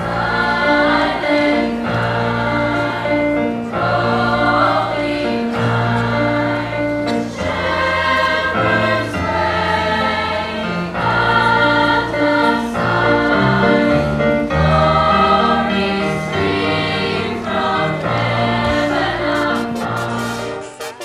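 Girls' choir singing a slow piece in long, held lines, over sustained low instrumental accompaniment.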